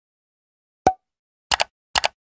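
Pop and click sound effects of an animated end screen as its buttons appear: a single short pop with a brief ringing tone just before a second in, then quick double clicks at about a second and a half and again near the end.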